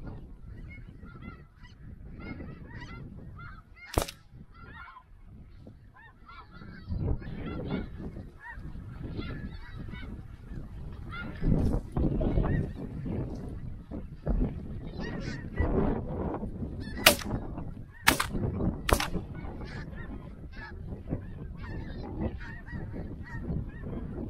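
Snow geese calling: a continuous chorus of many short, high, wavering calls, over a low wind rumble on the microphone. A few sharp clicks stand out, one about four seconds in and three close together past the middle.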